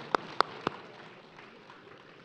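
One person clapping hands close to a microphone: three sharp claps at about four a second in the first second, then a faint steady hiss.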